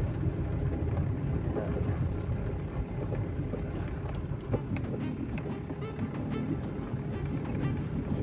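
Steady low rumble of a car's engine and road noise heard inside the cabin, with music playing along.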